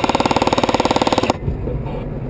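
Airsoft rifle firing a full-auto burst, a rapid, even rattle of shots that stops suddenly about a second and a half in, over the rumble of the truck.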